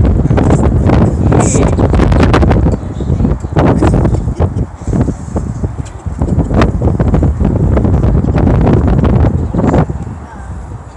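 Wind buffeting the microphone: loud, gusty rumble with crackling, dropping away at the very end.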